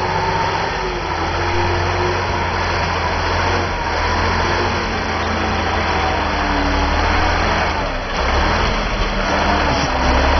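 Loaded six-wheel-drive logging truck's engine working under load as it crawls over a log corduroy road, its note rising and falling a little with the throttle.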